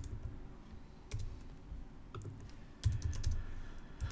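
Typing on a computer keyboard: a few scattered keystrokes with pauses between them, the loudest about three seconds in.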